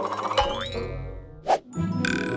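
Cartoon-style TV bumper jingle: bright music with a springy hit and a rising pitch glide, then a short swish about a second and a half in before the music carries on.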